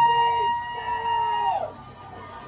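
A spectator's long, high-pitched shout held on one note for about a second and a half, then sliding down and breaking off, cheering on a runner breaking away on a football play.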